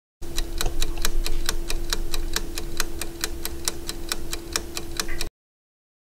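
Ticking timer sound effect: rapid, even ticks, about five a second, over a steady low hum, cutting off suddenly about five seconds in.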